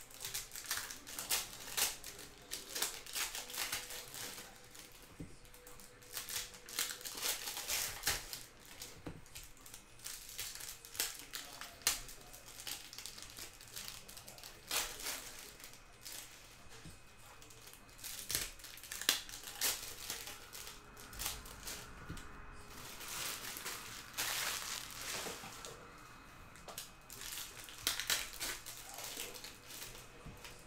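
Foil wrappers of Upper Deck O-Pee-Chee Platinum hockey card packs crinkling and tearing as they are ripped open by hand, with cards being handled: a dense, uneven run of short, sharp crackles.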